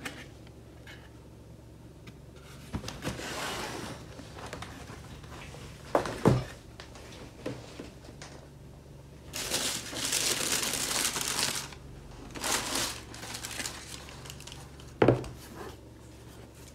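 Tissue paper crinkling and rustling as a new shoe is unwrapped from its shoebox, loudest for a couple of seconds near the middle, with two knocks against the table, one near the end.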